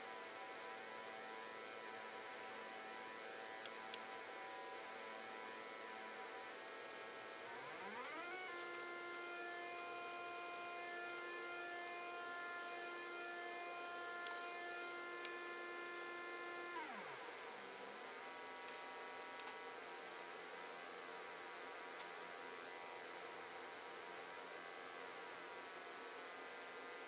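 Faint buzzy pulse-wave tone from an Arduino-driven square-to-ramp and comparator PWM circuit. It starts low, glides up to a higher note about eight seconds in, holds it, then glides back down to a low note at about seventeen seconds.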